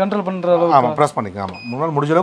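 A man talking, with one short electronic beep about a second and a half in from the touch-button control panel of a vibration massage machine as a speed button is pressed.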